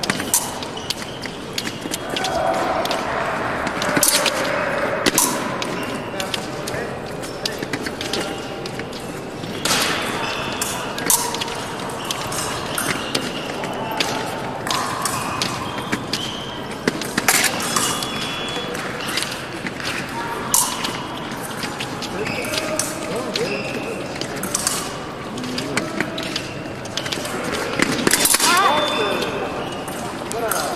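Épée bout: scattered sharp clicks and taps from blades and footwork on the metal piste, with indistinct voices in the background.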